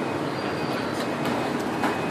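Steady background din with a few faint clicks.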